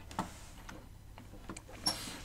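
A few faint, isolated clicks at a computer, about three in two seconds, over a steady low hum.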